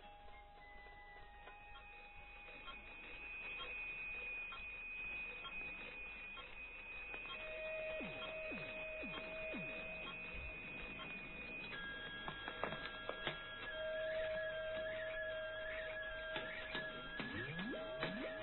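Electronic sound effects: steady pure tones held at a few pitches, the set changing every few seconds, with quick downward pitch sweeps that become more frequent in the second half.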